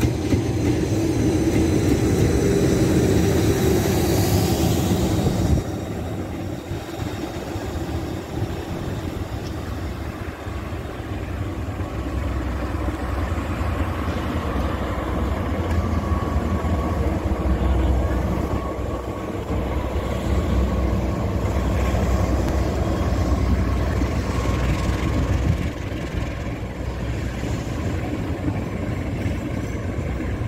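Trains running past on the line: a continuous rumble of wheels on rail, louder in the first few seconds with a faint high whine. A deep low rumble grows through the middle and later part.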